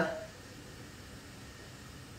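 A faint, steady hiss of room tone, after a woman's voice trails off at the very start.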